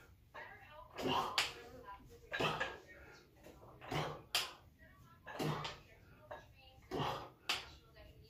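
A man's forceful exhales and low grunts of effort during alternating dumbbell hammer curls, one about every one and a half seconds in time with the reps.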